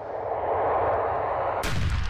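A rush of noise swells for about a second and a half, then a single loud black-powder gun blast hits near the end, deep and booming, with a ringing tail.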